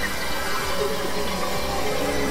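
Experimental electronic noise texture from synthesizers: a dense, hiss-like wash with many short tones flickering through it, holding a steady level.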